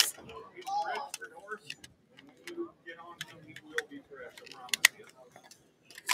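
Faint, distant voices and a few scattered clicks, with loud speech cutting off at the start while the auctioneer's microphone is out from a battery failure.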